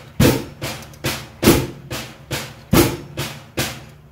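Drum kit playing flam accents slowly. Three loud flat flams, each struck on hi-hat, snare and bass drum together, come about a second and a quarter apart. Each is followed by two softer taps on the snare, alternating hands in an even triplet feel.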